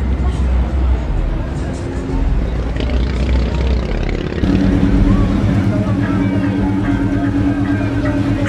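Car-show ambience: people talking and a deep vehicle rumble. About halfway through a steady low drone sets in and holds.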